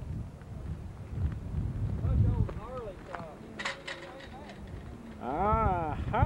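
Wind buffeting the camcorder microphone with a steady low rumble, under people's voices. There is a brief clatter past the middle, and a loud, high, sing-song voice near the end.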